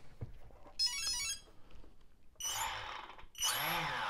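Electronic speed control sounding its stepped startup beeps through the brushless motor about a second in, as the second LiPo battery is connected. From about halfway through, the bare brushless motors, with no propellers fitted, whir up and back down twice under throttle, their whine rising and falling each time.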